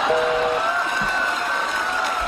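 A telephone busy signal, a steady two-tone beep, sounds once and stops about half a second in: the call has been hung up. It is followed by the studio audience cheering and applauding.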